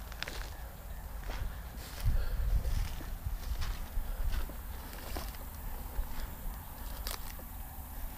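Footsteps walking through tall grass and low brush, with rustling stems and a few short clicks scattered through. A louder low rumble comes about two seconds in and lasts about a second.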